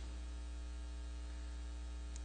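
Steady electrical mains hum, a low tone with a ladder of even overtones over a light hiss.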